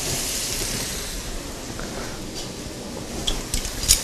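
Salmon fillets searing in about a tablespoon of hot oil in a stainless steel frying pan, a steady frying sizzle. A few sharp clicks come near the end.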